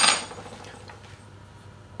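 Faint metal handling as a steel hollow mortise chisel is picked up from the workbench, over quiet workshop room tone.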